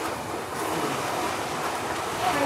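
Steady rush of sea surf washing onto the beach, an even noise with no distinct events.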